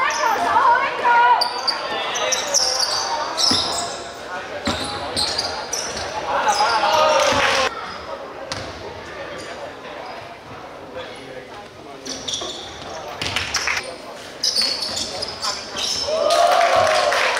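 Indoor basketball game sounds in a large, echoing gym: a basketball bouncing on the hardwood court, short high sneaker squeaks, and players' shouts and calls.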